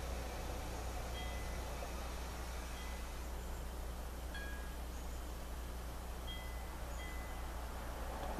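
Faint high ringing notes, a few at a time, over a steady low hum and background hiss.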